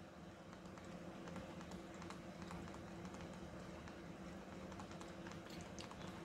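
Faint, irregular light tapping and clicking of a stylus writing by hand on a tablet, over a low steady electrical hum.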